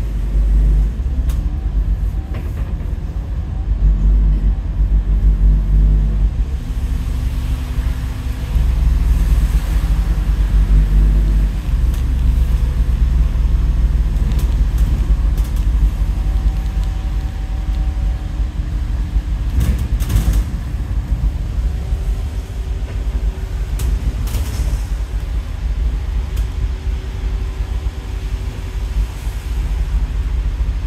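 Scania N230UD double-decker bus's five-cylinder diesel engine and running gear, heard from the upper deck while driving on a wet road: a loud, steady low rumble whose engine note shifts a few times as the bus changes speed, with a few short rattles or clicks now and then.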